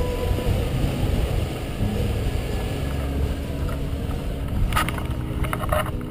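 Wind rushing over a microphone mounted on a hang glider's control frame during a low landing approach. Near the end come sharp knocks as the pilot's feet touch down and run on soft plowed ground.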